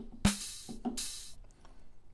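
Two drum-machine hits from a software drum kit: a kick with a bright, hissy cymbal-like hit about a quarter second in, then a second hissy hit about a second in.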